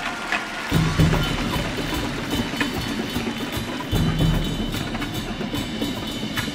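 Marching band drumline playing: snare drums in dense, rapid strokes with cymbals, joined by heavy low hits that come in just under a second in and again around four seconds.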